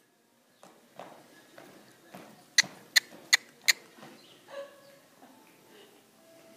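A horse walking on soft arena dirt, its hoof falls light and muffled about twice a second. Around the middle come four sharp, loud clicks in quick succession.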